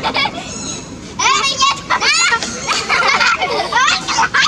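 Infant long-tailed macaque crying: a series of short, high-pitched, sharply rising-and-falling screeches in two runs, starting about a second in.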